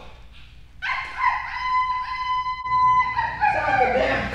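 A woman imitating a dog: a long, steady howl starting about a second in, breaking into shorter cries that slide downward near the end.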